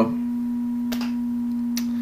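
A steady low electronic tone, unchanging in pitch and level, with two faint clicks, one about a second in and one near the end.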